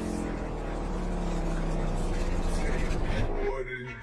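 Car audio system playing a song with vocals and heavy deep bass, loud inside the vehicle's cabin. The bass and the music cut out abruptly about three and a half seconds in.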